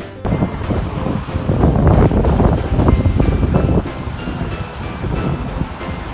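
Wind buffeting the microphone outdoors: a loud, uneven rushing noise that swells for about three seconds and then eases, over faint background music.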